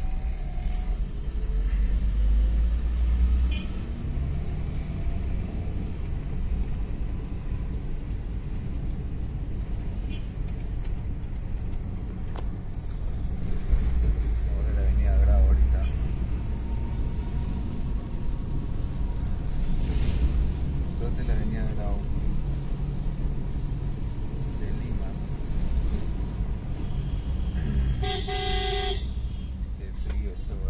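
Low, steady rumble of a car's engine and tyres heard from inside the cabin while driving in slow city traffic. A car horn honks briefly near the end.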